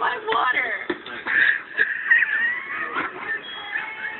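People's voices without clear words: high, gliding vocal sounds, with a few short knocks between them.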